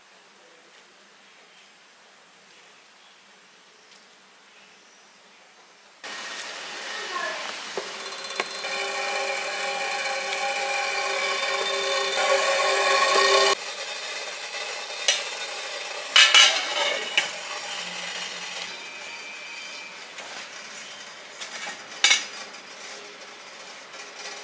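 Stainless steel idli steamer on the stove. A steady hiss with a humming whine grows louder for about seven seconds and then cuts off suddenly. Sharp metal clinks of the steamer plates and lid follow, one of them about two seconds before the end.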